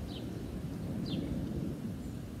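A low, steady rumbling background noise, with two faint short hisses, one near the start and one about a second in.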